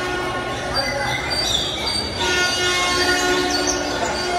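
Loud recorded soundtrack over a hall PA system, with blaring chords of held tones that change to a new chord about halfway through. A brief high squealing tone sounds in the middle.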